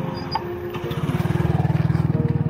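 A small motorcycle engine passing close, its exhaust pulsing rapidly and growing louder through the second half.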